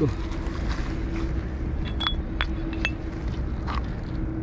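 Glass bottles and shards clinking among stones as they are handled: three sharp clinks about two to three seconds in, two of them with a short bright ring. Underneath runs a steady low rumble with a faint hum.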